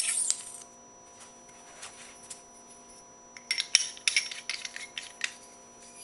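Paintball barrel parts, a barrel back and its shift insert, clinking and scraping as they are fitted together: a short burst of rattling at the start, a few faint clicks, then a cluster of sharp clicks and scrapes from about three and a half to five seconds in.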